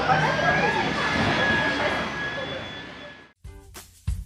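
Plush-toy stuffing machine blowing fibre fill into a toy dog: an even blowing noise with a faint steady whine, under background voices. It cuts off abruptly a little over three seconds in, and music with a beat begins.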